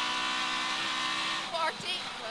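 Toyota Corolla Twin Cam's twin-cam four-cylinder rally engine held flat out at steady high revs, heard from inside the cabin on the run to the stage finish. About one and a half seconds in the engine note drops off as the throttle is lifted, and a short voice follows near the end.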